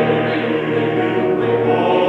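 Men's vocal ensemble singing a cappella in close harmony, with low voices pulsing a repeated bass note under sustained upper chords.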